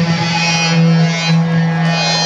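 Electric guitar holding one steady low droning note through the amplifiers at a live metal show.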